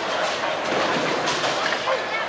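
Bowling alley din: a rolling rumble of balls on the lanes with scattered clatter, likely pins, over background voices.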